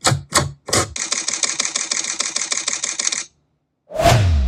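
DSLR camera shutter firing: three single shots in the first second, then a rapid continuous burst of about ten frames a second for a little over two seconds, which cuts off suddenly. A deep boom begins right at the end.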